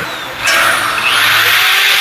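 Yellow corded electric drill switched on about half a second in and running steadily.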